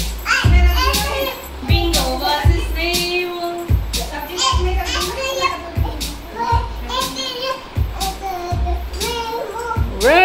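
A toddler singing a nursery song in a small high voice, the words unclear, with one long held note about three seconds in.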